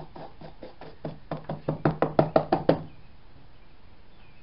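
A rapid series of light knocks or taps, about six a second, growing louder through the second and third seconds and stopping abruptly just before three seconds in.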